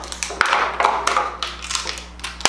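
Plastic packaging rustling and clicking as a small makeup brush is tugged out of a travel brush set whose brushes are glued in. A rapid run of crackles and clicks starts about half a second in.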